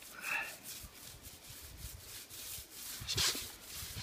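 Paint roller with a medium-pile sleeve rolling wet eggshell paint over a concrete pool wall: a rasping rub that comes and goes with each stroke, strongest about three seconds in. A short squeak sounds just after the start.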